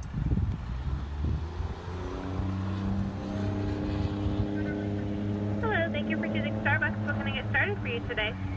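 Car engine idling, heard from inside the cabin as a steady low hum. From about two seconds in, a steady pitched hum joins it, and in the last two seconds a voice comes through the drive-thru order speaker.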